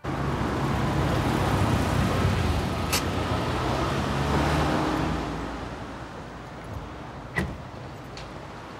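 A car driving in close by, its engine and tyre noise loud, then dying away after about five seconds. A sharp click comes about three seconds in, and a sharper knock near the end.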